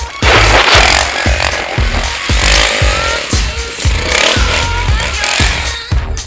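Music with a steady beat, mixed with a trials motorcycle's engine revving as it spins its rear wheel in loose dirt, over a loud rushing noise.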